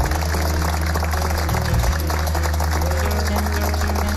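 A live studio band playing, with held bass notes that change pitch every second or two under a dense full-band sound.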